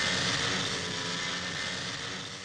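Simson Schwalbe scooter's small two-stroke engine running steadily as the scooter rides away, its sound fading toward the end.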